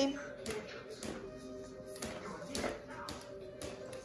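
Baby activity jumper's electronic toy playing a faint tune of held notes, with a few light taps as the baby bounces in the jumper.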